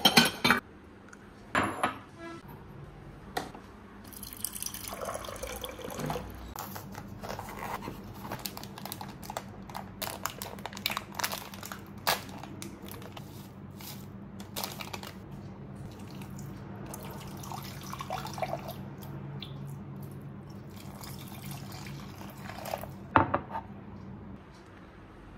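Kitchen handling sounds: crockery clinking as a bowl is taken from a dish drawer, a foil sachet torn open, and water poured into the bowl with trickling and dripping. A steady low hum runs underneath.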